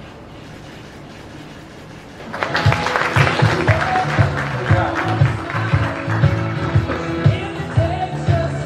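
Guests applauding after the pronouncement. About two seconds in, a recessional song with a steady beat and a singer starts loudly and carries on over the applause.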